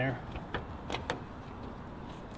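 Three short metallic clicks from the rear door handle and latch of a 1959 Citroën 2CV as the door is unlatched and opened.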